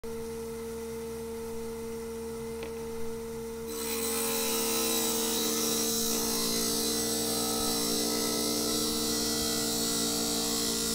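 A lapidary trim saw's wet diamond blade spins with a steady hum. About four seconds in, it bites into a small Malawi agate, and a harsh grinding hiss of the cut takes over and holds steady.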